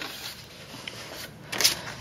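Soft paper and cardboard rustling as a printed information card is lifted out of an opened cardboard shipping box, with a short louder rustle near the end.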